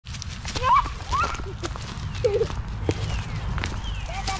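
A toddler's voice making short, high-pitched babbling sounds that glide up and down, with wind rumbling on the microphone and a few light knocks.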